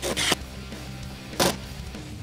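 Cordless power tool with a socket running in short bursts as it drives the bolts of a caster mounting plate: two quick bursts at the start and another about a second and a half in. Guitar background music plays underneath.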